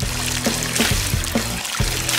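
A squeeze bottle squirting a stream of brown syrup that splatters onto a face, a steady hissing spray, over background music.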